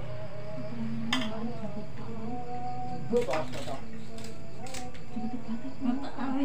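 A voice softly singing drawn-out melodic notes, with a few sharp clicks from handling things nearby.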